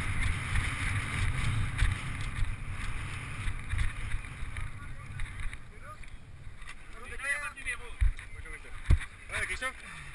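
Wind buffeting the camera microphone and the rumble of a mountain bike rolling over grass and dirt, dying away as the bike slows about halfway through. Voices then come in, with two sharp knocks near the end.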